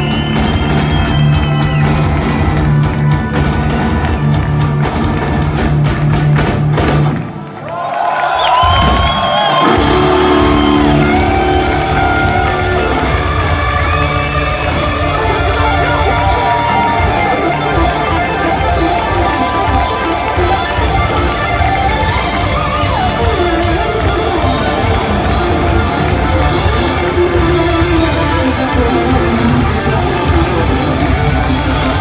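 Live heavy metal band playing: electric guitars, bass and drum kit, loud and continuous. A brief break about seven seconds in, then the full band comes back in with a melody line over it.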